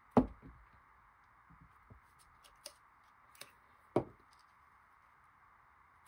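Quiet handling of paper and a journal on a desk: a sharp knock about a quarter-second in, another about four seconds in, and a few faint taps between, as hands place a paper stamp cut-out on a journal page.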